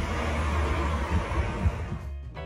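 Street ambience: a steady low rumble of passing traffic with a general noise wash, swelling briefly a couple of times near the end.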